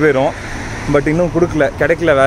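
A man speaking, with low road traffic noise behind his voice.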